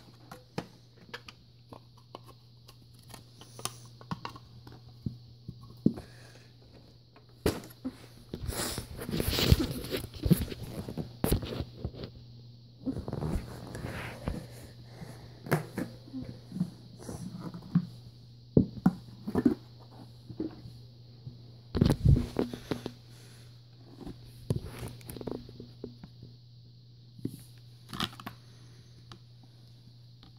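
Plastic vacuum-cleaner parts being handled by hand: irregular clicks, knocks and rattles of plastic bins and housings being picked up and set down, with busier, louder spells about nine seconds in and again about twenty-two seconds in. A steady low hum runs underneath.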